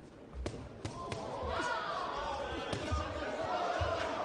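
Boxing gloves landing punches as a few sharp smacks, under crowd voices shouting that swell from about a second in.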